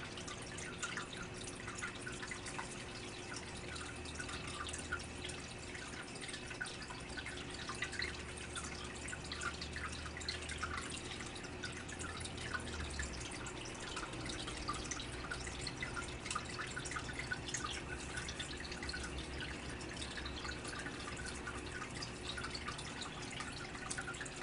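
Water dripping and trickling steadily in a turtle tank: a quiet patter of small drops over a faint steady hum.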